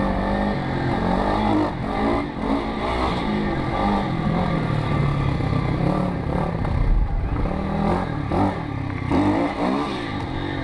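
Small single-cylinder pit bike engine revving up and falling back again and again as it is ridden round the track, the throttle opened and closed every second or two.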